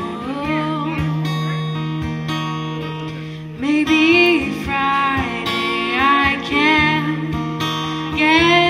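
Acoustic guitar played under a singing voice in a slow, gentle song. The music dips briefly a little before the middle, then the voice comes back stronger with a wavering vibrato.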